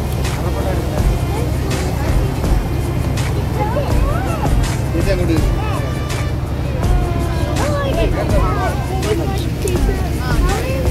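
Passenger boat's engine running with a steady low drone, with people's voices and a faint tune heard over it.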